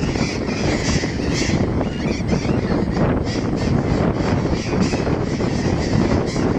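A flock of burrowing parrots calling harshly at their nest cliff, many calls overlapping, longer calls at first and shorter separate ones later. Under them runs a steady low rush of wind on the microphone.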